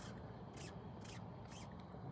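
Fishing reel working against a hooked fish: a few short, high rasps, typical of line being pulled off against the drag, over a low steady background hum.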